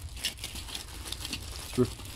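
Clear plastic bag of die-cast toy cars crinkling as it is picked up and moved, a run of short crackles through the first second and a half.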